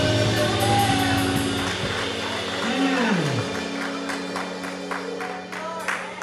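Live church worship band (electric guitar, keyboard, drums and saxophone) holding a chord as a song winds down, slowly fading, with a low note sliding down about halfway through and a few light drum hits near the end.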